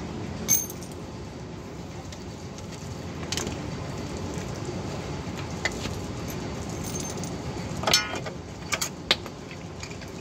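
Metal drum-brake hardware (shoe hold-down clips, springs and shoes) being unhooked and handled, giving scattered sharp metallic clinks and clatter. The loudest clink comes near the end and rings briefly.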